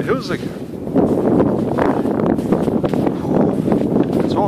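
Wind buffeting the microphone in a steady rush, with a short pitched sound just after the start.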